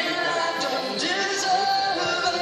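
Worship music with voices singing held notes at a steady level.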